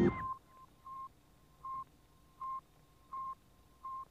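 Sputnik 1's radio signal: short beeps at one steady pitch, about five of them, evenly spaced roughly three-quarters of a second apart. At the very start a swelling music chord cuts off.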